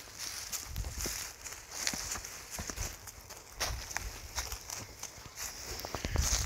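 Footsteps crunching and rustling through dry leaf litter, in an uneven series of soft steps.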